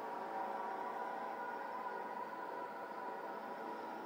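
Steady droning hum of a giant spaceship in a film's sound effects, a held, unchanging tone with several pitches layered over a faint hiss.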